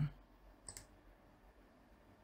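A single short mouse-button click a little under a second in, against a quiet room.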